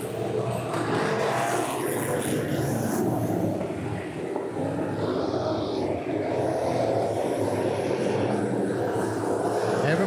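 Engines of a pack of factory stock race cars running laps around a dirt oval, a steady blended engine noise, with indistinct spectator voices mixed in.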